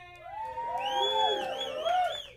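Audience whooping and cheering: several voices in overlapping rising and falling calls, swelling in the middle, with a high wavering whistle-like tone over them.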